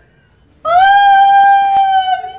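A woman's long, high "Oh!" of delighted surprise, held on one steady pitch. It starts about half a second in, after a brief hush.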